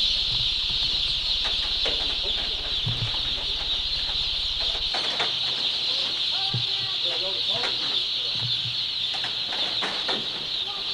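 Dense, steady peeping chorus of thousands of young chicks crowded on a brooder-house floor, a constant high-pitched din. A low hum underneath stops about halfway through.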